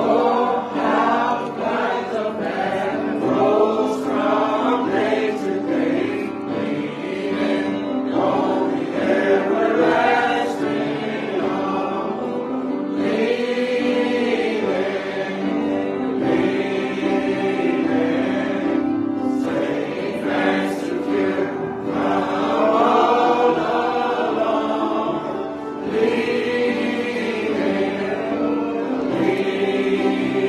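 Church congregation singing a gospel hymn together, continuous group singing throughout.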